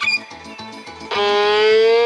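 Violin playing over a regular plucked accompaniment. About a second in, the violin moves into one long held note with vibrato that swells and slides slightly upward.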